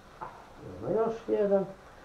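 A woman's voice, a short utterance of about a second in the middle, over a faint steady background with a small click just before it.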